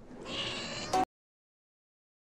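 A cat's meow: a single call of under a second that cuts off abruptly.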